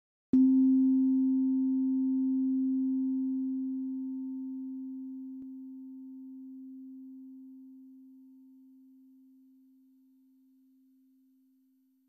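A meditation bell struck once, ringing with a low steady tone and a fainter higher overtone that slowly fade away over about eleven seconds.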